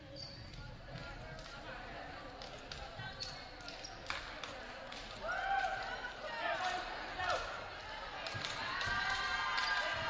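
Girls' voices in an echoing gymnasium: a few light knocks over the room noise at first, then high calls from about five seconds in, building into overlapping team shouts near the end.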